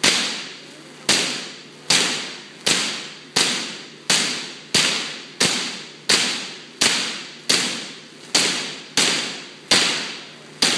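Megavolt sparks from a two-story Van de Graaff generator striking a metal Faraday cage. It gives loud, sharp cracks at an even rate of about one every three-quarters of a second, each fading off in the echo of a large hall.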